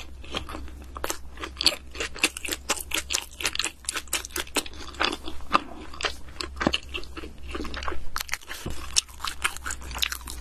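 Close-up chewing of a bread-and-egg breakfast sandwich, with a dense run of small sharp crunchy clicks from the bread as it is chewed.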